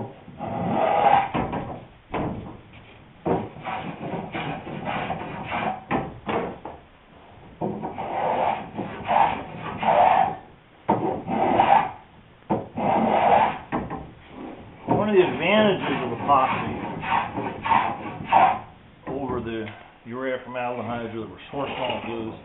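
Small hand block plane taking repeated cutting strokes along a wooden sailboat rail, a series of rasping strokes about a second apart, as the rail's bevel is planed flat to fit the hull.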